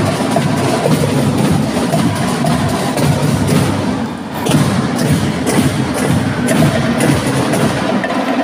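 Marching band percussion section playing a drum cadence: a dense, driving rhythm of drum and stick hits with sharp wooden clicks, dipping briefly about four seconds in.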